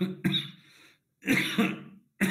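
A man coughing in short fits: two quick coughs right at the start, then two more a little over a second later.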